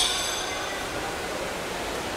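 Steady rushing noise of swimming-pool water and swimmers splashing, with a high buzzing tone that stops about half a second in.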